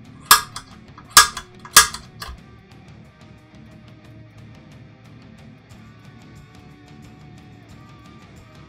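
A center punch marking hole positions on an aluminium C-beam extrusion: three sharp metallic snaps within the first two seconds, with a couple of fainter ticks. Background music with guitar plays throughout.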